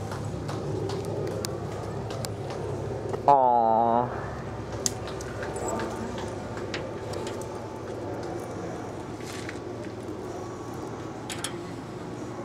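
A goat bleats once, a short wavering cry under a second long, over a steady background with a few light clicks.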